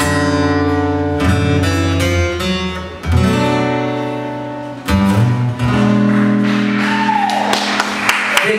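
Acoustic guitar strumming the closing chords of a song: a few strong strums, the last chord left ringing. Audience applause starts about six seconds in.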